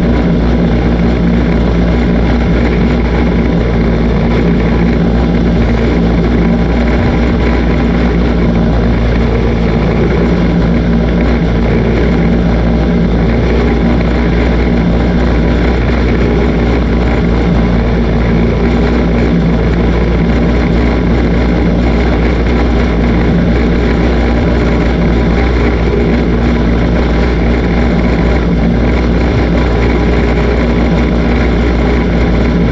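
Dirt-track race car's engine idling steadily, heard loud from inside the cockpit, with no revving.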